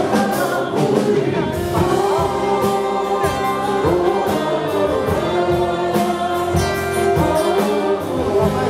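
A live band playing a song: voices singing over acoustic guitar, electric bass and drums, with regular drum hits under the melody.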